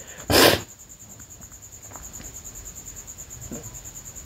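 A short, loud breathy burst from a person about half a second in, then faint background hiss with a few light ticks.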